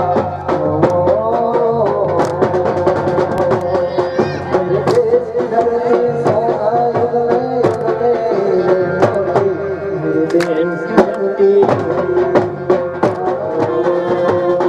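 Live Gujarati folk dance music for garba and dandiya: dhol drum strikes and percussion under a wavering melody line, playing on without a break.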